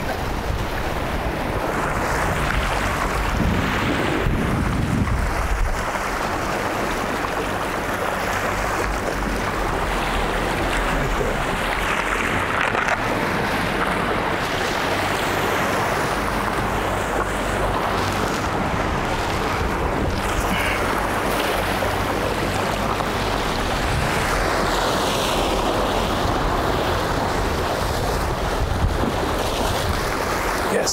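Sea waves washing and breaking against rocks, a steady surf with wind buffeting the microphone.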